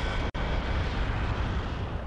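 A steady low rumble with a faint hiss above it, like an aircraft engine running, that drops out for an instant about a third of a second in.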